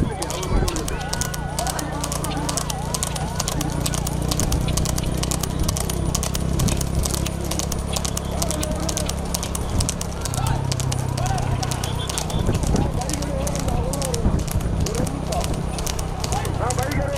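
Hooves of several horses pulling light two-wheeled racing carts, clattering rapidly and continuously on asphalt, over a steady low hum.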